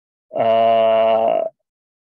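A man's voice holding a drawn-out hesitation sound, an "eeeh", at one steady pitch for a little over a second as he searches for the next word.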